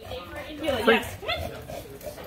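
A dog whining in a few short, pitched calls, the loudest about a second in and another shortly after.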